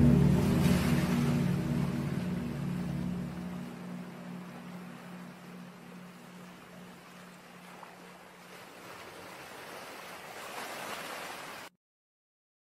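Ocean surf washing on a shore, a steady hiss of waves that swells again near the end and then cuts off suddenly. A low held hum of background chant fades out over the first few seconds and lingers faintly underneath.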